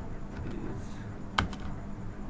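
Typing on a computer keyboard, scattered key clicks over a steady low hum, with one sharper, louder click about one and a half seconds in.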